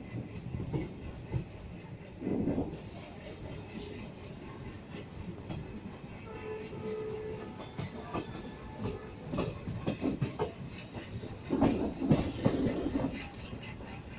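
Indian passenger express train running through a station without stopping, heard from an open coach door: a steady rumble of wheels on track with repeated clattering knocks over the rail joints, loudest in a cluster near the end.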